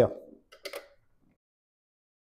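The end of a spoken sentence, then a short click and brief clatter of a plastic dome camera being handled. After that comes dead silence for the last second or so.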